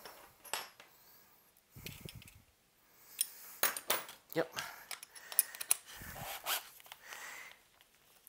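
Loose steel drill bits and small metal hand tools clinking and tapping as they are picked up and set down on a wooden workbench, with two dull thumps, about two seconds in and about six seconds in.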